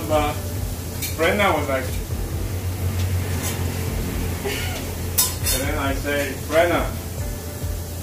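Meat frying in a pan on a commercial gas range, with metal tongs and utensils clinking against the pans a few times, over a steady low hum.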